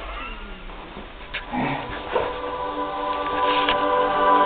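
A drawn-out wailing cry that falls in pitch, then music with long held notes swelling in from about a second and a half in and getting louder.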